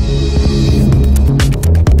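Electronic music with a heavy, pulsing bass line; sharp percussion hits come in about one and a half seconds in.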